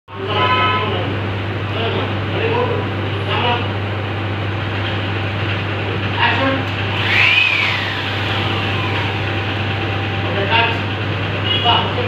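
Indistinct voices in the background over a steady low hum, with a whistle-like tone that rises and then slides down about seven seconds in.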